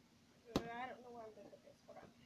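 A single sharp knock about half a second in, followed straight away by a brief voice for about a second. A faint steady hum runs underneath.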